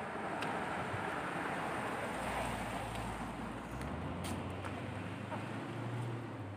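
A car driving past on the road, a steady rush of tyre and engine noise that swells slightly about two seconds in, with a low rumble under it in the second half.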